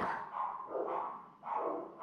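Three faint, short, drawn-out animal calls, the last about one and a half seconds in.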